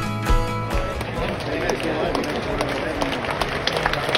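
Music with a steady beat over the stadium speakers cuts off just under a second in. Cricket-ground crowd chatter with scattered sharp claps follows.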